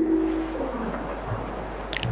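Steady hiss and a low hum from a poor-quality old cassette tape being played over loudspeakers, with no voice coming through, and a short click near the end.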